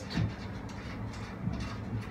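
Low steady hum with two soft handling thumps, one just after the start and a smaller one about one and a half seconds in, as a hand turns a nut on a steel socket-bar clamp.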